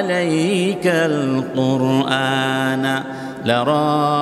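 A man's voice reciting a Quranic verse in Arabic in a melodic chant, holding long notes, with a short break for breath about three seconds in.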